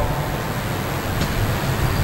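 Steady low rumble and hiss of background noise, with a faint click just over a second in.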